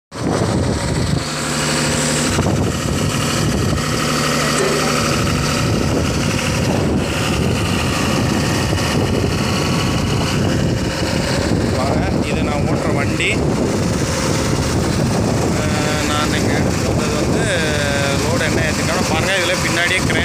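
Heavy diesel truck engine running steadily close by, with indistinct voices talking over it in the second half.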